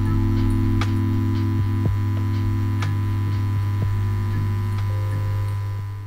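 Outro music: a steady low droning hum under shifting held synth tones and light clicks, fading out near the end.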